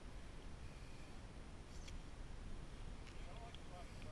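Quiet outdoor background: a low steady rumble with faint voices toward the end and a couple of light clicks.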